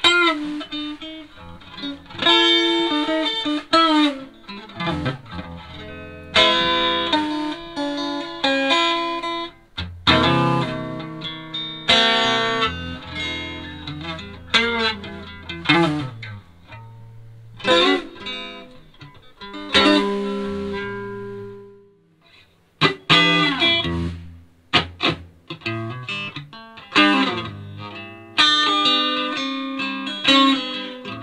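Stratocaster-style electric guitar played through an amp: lead phrases with string bends. After a short pause about two-thirds of the way through, the playing resumes with drums joining in.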